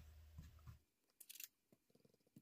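Near silence, with a faint, brief scratchy swish about a second in from a round blending brush being swept over a plastic stencil.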